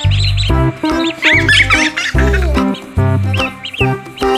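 Background music with a repeating bass line, over which chicks peep in a quick flurry of high chirps a little over a second in.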